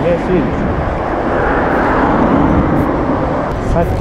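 Wind noise on a bicycle-mounted camera's microphone mixed with road traffic, a steady rushing rumble that swells a little about halfway through, as the bicycle rides along a busy street.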